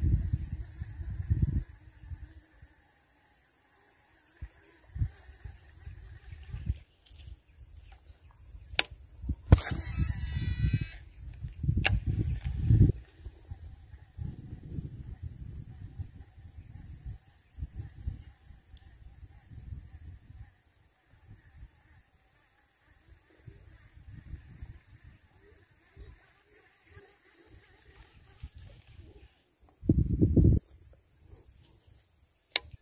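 Wind buffeting the microphone in irregular low gusts over a steady, faint high insect drone. A brief whirring burst comes about ten seconds in.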